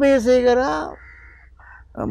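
A man's voice holding a long drawn-out syllable, then a pause of about a second.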